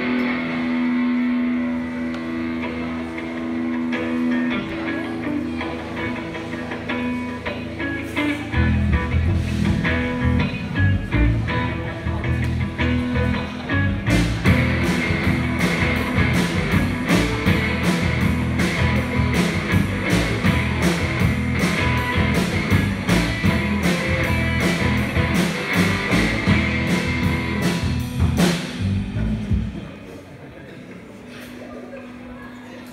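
A live rock band with electric guitars and drum kit playing a song. Guitar alone at first, a heavy low end filling in about a third of the way through, the drums with cymbals joining about halfway, and the whole band stopping just before the end.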